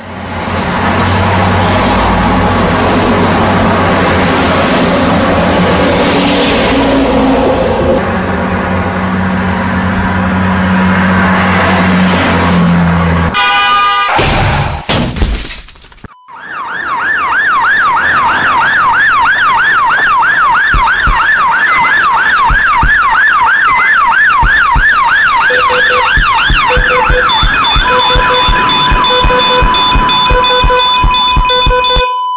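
Loud road traffic for about thirteen seconds, then after a short break an ambulance siren in a fast yelp, rising and falling about three times a second. Near the end a heart monitor beeps evenly alongside a steady held tone.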